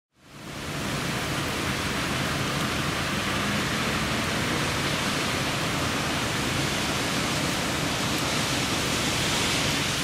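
Steady rain on a wet street: an even hiss that fades in over the first second and then holds level.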